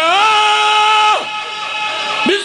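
A man's voice chanting in the melodic style of a majlis recitation through a microphone and loudspeakers. It rises into one long held note, then falls away about a second in.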